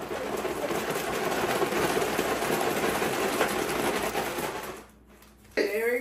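Chocolate- and peanut-butter-coated cereal shaken with powdered sugar in a plastic zip-top bag: a dense, rapid rattle for about five seconds that stops suddenly.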